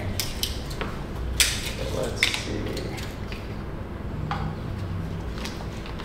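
A few scattered sharp clicks and light knocks of small objects being handled. The loudest comes about a second and a half in.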